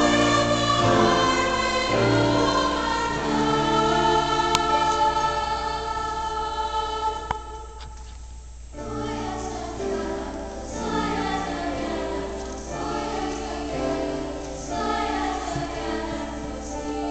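A youth choir singing in parts with long held notes. It breaks off briefly about eight seconds in, then comes back in more softly.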